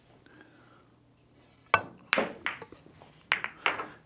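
Pool cue tip striking the cue ball sharply about two seconds in, followed by a string of sharp ball-on-ball clicks and knocks as the two ball is banked into the nine.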